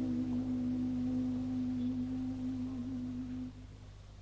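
A countertenor voice holds the song's final note, a steady tone with a slight vibrato, over a softly ringing lute. The note cuts off about three and a half seconds in.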